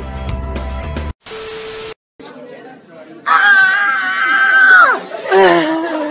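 Music with voice cuts off about a second in. A burst of TV-style static with a steady beep under it follows as a transition. Then a man's voice holds one long, loud, high note that slides down at the end, and more voice follows.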